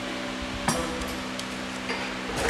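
A steady low hum, with a sharp click about two-thirds of a second in and a few fainter ticks after it.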